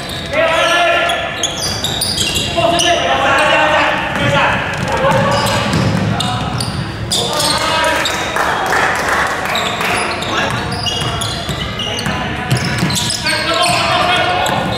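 Basketball game sounds in a large echoing gym: a ball bouncing repeatedly on the wooden court floor, with players' and onlookers' voices calling out throughout.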